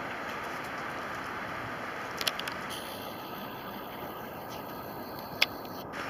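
Steady outdoor background noise, with a few short sharp knocks a little after two seconds in and one more near the end.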